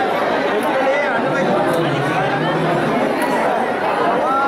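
A large outdoor crowd chattering, with many voices talking over one another at a steady level.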